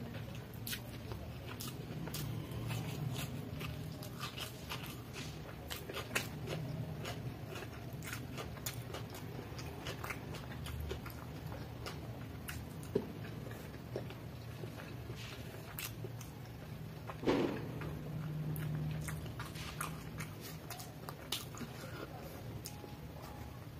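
Close-miked chewing of noodles and boiled egg, with many short wet mouth clicks and slurping of noodles. There is one louder mouth sound about three quarters of the way through.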